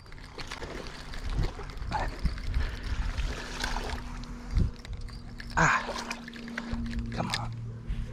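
A spinning reel being cranked while a hooked largemouth bass splashes at the water's surface, with a few short bursts of splashing.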